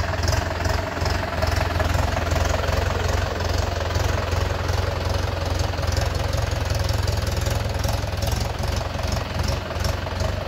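Mahindra Yuvo 585 4WD tractor's 50 HP DI diesel engine running steadily under load, hauling a loaded trolley through mud.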